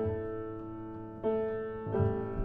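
Solo acoustic piano playing a slow, quiet passage: a chord struck at the start and another a little past halfway, each left to ring and fade.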